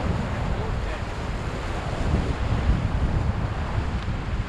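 Ocean surf washing against a rocky lava shoreline, with wind buffeting the microphone in a steady low rumble.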